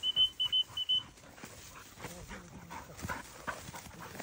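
A dog panting close by, with three short, evenly spaced high notes in the first second: a call like a common quail's.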